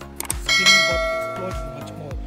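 A click, then a bell-ding sound effect for a subscribe-button animation: the bell rings out about half a second in and fades over about a second and a half. Background music with a steady beat plays under it.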